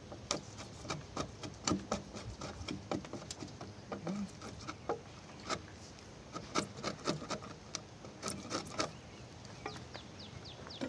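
A timber-framing slick pushed by hand, paring a joint in a hewn beam: irregular short scrapes and clicks as the blade shaves off wood.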